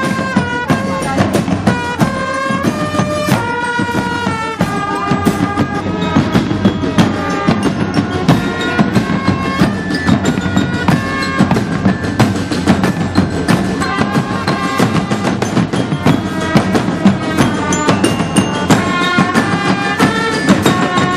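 Marching drum band playing: bass drums and snare drums beating a dense, steady rhythm with a melody carried over the top.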